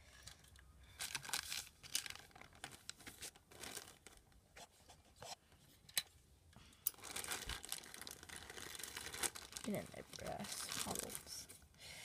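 Packaging being handled as a model locomotive is put back in its box: irregular crinkling, rustling and crackling, busier in the last few seconds.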